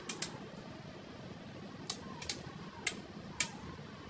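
Eating utensils clicking against plates and bowls at a meal table: about six short, sharp clicks spread over a few seconds, a few with a brief ring.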